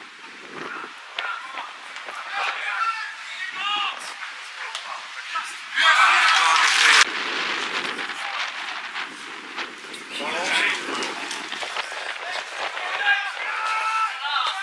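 Men's shouts carrying across an outdoor football pitch during play. About six seconds in there is a loud, noisy burst lasting about a second.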